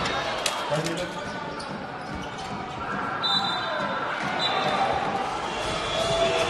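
Basketball game sound on a hardwood court: sharp ball bounces in the first second, then short high sneaker squeaks, over a steady arena background noise.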